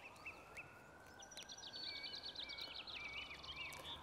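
Faint birdsong: small birds chirping and twittering in quick short phrases over low, steady outdoor background noise.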